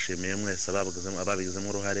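A man's voice speaking, a speech in progress, over a steady high hiss that lasts throughout; the voice stops at the end.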